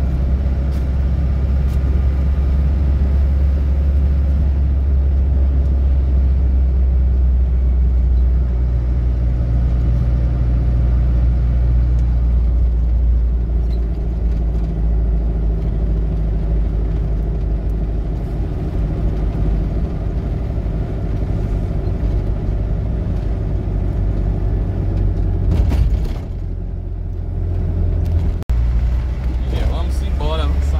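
Engine and road noise heard from inside a moving vehicle's cab: a steady low drone. About four seconds before the end the level dips briefly, and a single sharp click follows a couple of seconds later.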